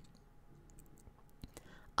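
Quiet pause with a few faint small clicks, mouth noise from the reader, in the second before he starts speaking again, ending in a short soft intake of breath.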